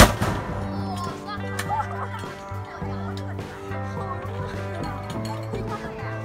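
A single loud bang as a traditional pressure-drum popcorn machine is burst open to release a finished batch, right at the start, with a short rush after it. Background music plays throughout.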